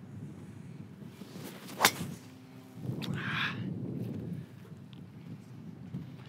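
A Titleist TSR driver strikes a golf ball once, a single sharp crack of impact about two seconds in.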